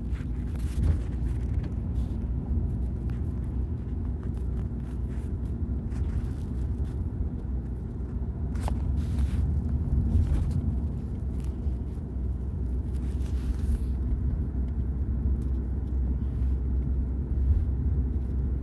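A car driving along, heard from inside the cabin: a steady low rumble of engine and tyre road noise.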